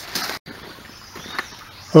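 A short burst of rustling noise that cuts off abruptly, then faint outdoor background by a creek with a brief high bird chirp about halfway through.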